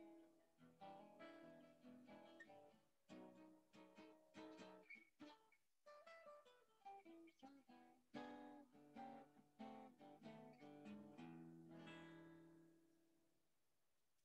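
A 1946 Epiphone Emperor archtop acoustic guitar played solo, faintly, in plucked chords and single-note melody lines, with a final chord left ringing and fading out near the end.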